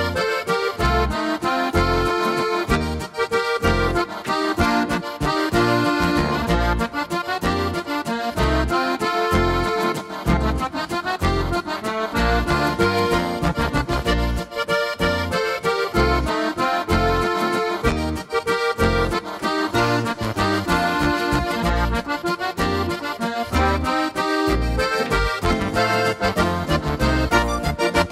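Korg Pa5X Musikant arranger keyboard playing an Oberkrainer waltz style: an accordion-led melody over an oom-pah-pah accompaniment with a bass on the beat. The music runs without a break and stops at the very end.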